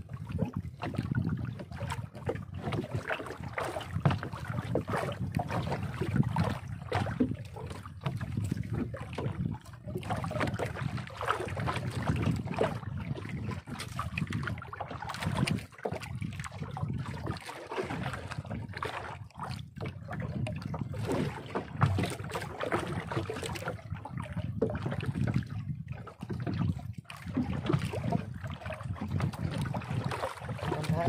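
Water slapping against the hull of a small outrigger boat, with wind buffeting the microphone in uneven gusts.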